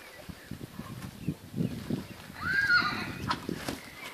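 Ridden horse's hooves thudding on grass in an uneven run of soft low beats, with a short rising-and-falling call about halfway through.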